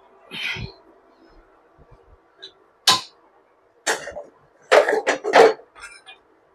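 A few short scraping and clattering sounds of bowls and utensils being handled on a granite kitchen counter. The busiest run of quick strokes comes about five seconds in.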